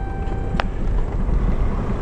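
Cabin sound of a 2011 Caravan with a swapped-in 2.0 TDI common-rail diesel, driving: low, steady engine and road rumble with wind noise. A steady high tone stops with a click about half a second in.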